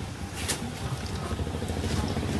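Low, steady engine rumble with a sharp click about half a second in.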